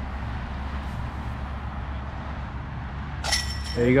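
A disc golf disc striking the metal chains of a basket about three seconds in: one sharp metallic clank with a brief ringing, over a steady low background rumble.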